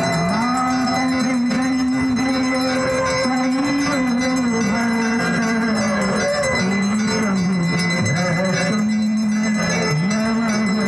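Devotional aarti hymn sung to a slow, wavering melody over continuous bell ringing, loud and unbroken.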